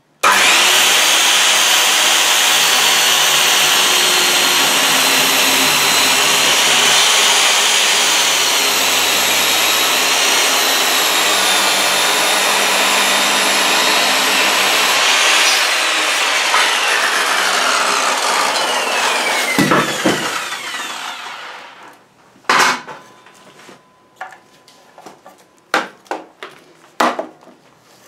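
Handheld circular saw cutting through a stack of MDF boards in one long pass, its whine steady for about fifteen seconds, then the motor winding down with a falling pitch over several seconds. A few sharp knocks follow near the end.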